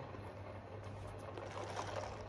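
Faint sipping of a drink through a plastic straw, over a low steady hum.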